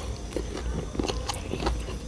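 A person chewing food close to the microphone, with irregular crunching clicks.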